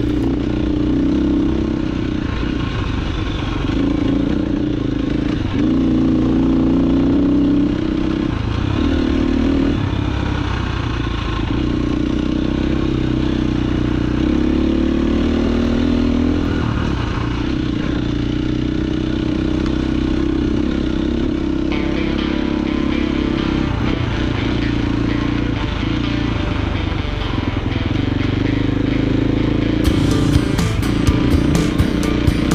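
KTM enduro dirt bike engine running on a trail ride, its pitch rising and falling as the throttle is opened and closed.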